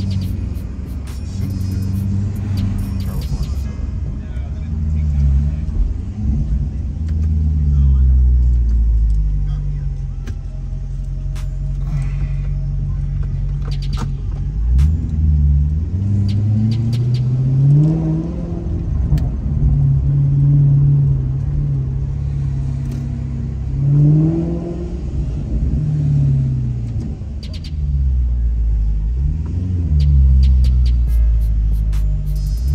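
Maserati GranTurismo engine heard from inside the cabin while driving at low speed, running steadily and then twice pulling up through a gear in the second half, each rise in pitch ending with a drop at the upshift.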